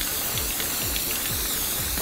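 Aerosol spray-paint can hissing steadily in one long burst as paint is sprayed onto a plywood door, stopping at the end, over background music.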